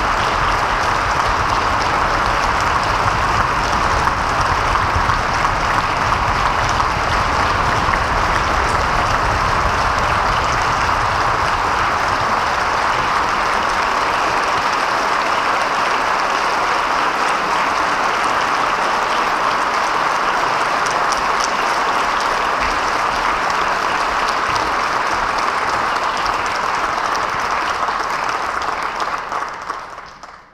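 Concert-hall audience applauding steadily after a performance, fading out near the end.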